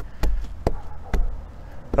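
Four sharp clicks from a corrugated plastic yard sign being handled on its wire H-stand.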